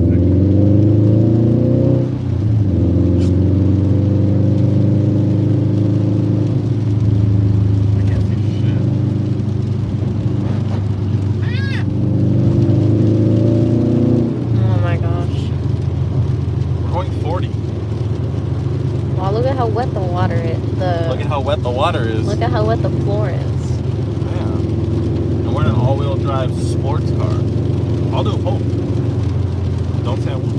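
A car's engine and road noise, heard from inside the cabin while driving. The engine note climbs several times as the car accelerates in the first half, then runs steadier. Voices are heard over the drone in the second half.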